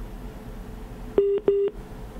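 Two short, loud telephone-line beeps, a steady single pitch each lasting about a fifth of a second and a third of a second apart, heard over a phone line during a call-in.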